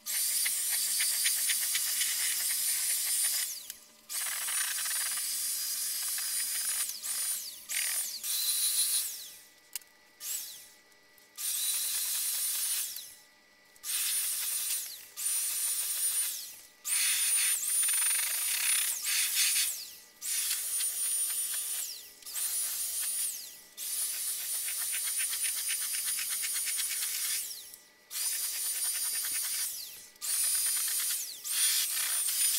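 Wagner Flexio 2000 handheld HVLP paint sprayer running: a high motor whine over the hiss of air and atomised paint. It comes in a dozen or so bursts of a few seconds each, stopping and starting again, with the whine rising as each burst starts, as coats of primer and satin white paint go onto MDF.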